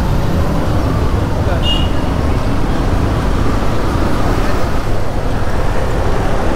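A motorcycle riding through city traffic: a steady low rumble of engine, tyres and wind on the microphone, with surrounding traffic. About 1.7 s in there is one brief high-pitched beep.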